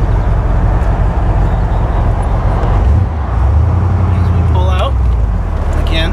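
1966 Corvette's 300 hp 327 V8 running on the road, with wind and tyre noise from the open cockpit. About three seconds in, the engine sound dips briefly, then comes back stronger and deeper.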